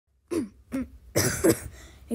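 A person coughing and clearing their throat: two short sounds, then a louder, harsher burst about a second in.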